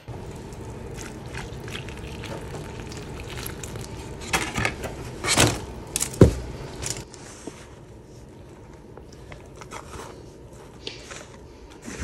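Potting mix being handled in a plastic seed tray: scattered scrapes and knocks, the loudest a thump about six seconds in, over a steady hiss that eases about seven seconds in.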